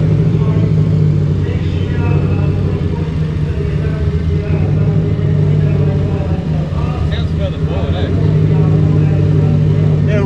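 Ford Falcon GT's 5.4-litre DOHC V8 idling steadily with a deep, even note, with faint voices in the background.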